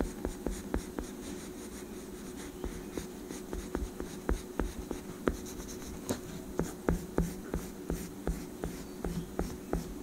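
Oil pastel being rubbed over a sketchbook page in quick short strokes, several a second, close to the microphone.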